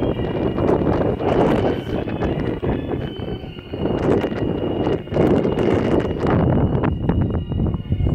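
Wind buffeting the microphone in irregular gusts, a loud rising-and-falling rumbling hiss, with a faint steady high tone underneath.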